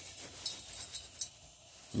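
Faint knocks as a Coleman 220E lantern's steel fuel fount is handled and turned over, with a brief thin trickle of leftover fuel running out of it from about half a second in to just past a second.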